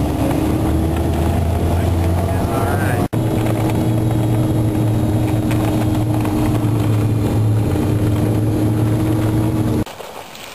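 Snowcat engine running steadily under way, heard from inside the cab as a loud, even drone. It breaks off for an instant about three seconds in and cuts off just before the end.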